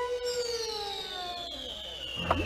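A cartoon sound effect: one long whistle-like tone that slides slowly down in pitch, the classic falling-whistle cue.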